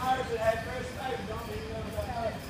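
Faint, broken snatches of people talking in the background, with no single clear speaker and no other distinct sound.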